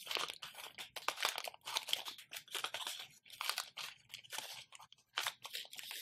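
Scissors snipping through a crinkly plastic chocolate-bar wrapper, with the wrapper crackling as it is cut and handled in a string of short, irregular crackles and snips.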